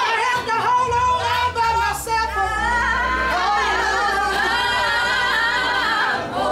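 Live gospel singing with instrumental backing: a lead voice holds long, wavering notes over a steady bass that comes in about a second in.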